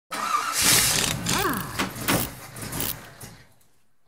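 Logo intro sound effect: a loud rush of noise with a few sharp clicks and a quick rising-and-falling sweep about one and a half seconds in, fading away by three and a half seconds in.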